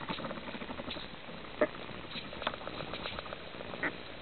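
Underwater ambience picked up through a camera housing: a steady patter of faint clicks and crackles, with a sharper click about a second and a half in and another just before the end.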